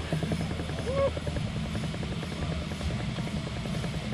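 Wind buffeting the ride's onboard camera microphone as the Slingshot capsule swings, a steady low rumble with a fast, even flutter.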